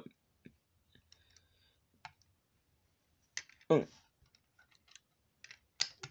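Faint scattered clicks from a Hot Wheels die-cast toy trailer being handled as its hinged section is moved down. A short vocal sound comes a little past halfway, and a few sharper clicks follow near the end.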